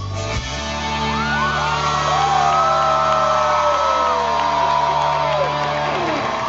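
A live rock band holding a final sustained chord while the concert crowd whoops and cheers over it.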